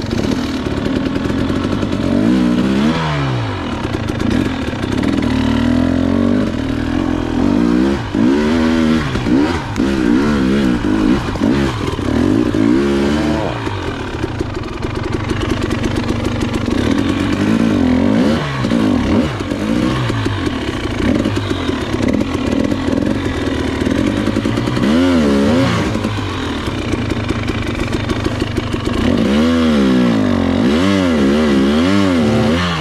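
KTM two-stroke enduro motorcycle engine running throughout, revved up and down again and again in short blips as the bike struggles with little or no forward movement on a steep trail climb.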